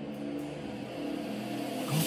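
Live electronic music: a held synth chord with a swelling hiss building up underneath it, with no beat yet.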